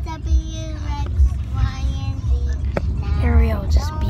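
Singing voices with music, over the low rumble of a car in motion heard from inside the cabin.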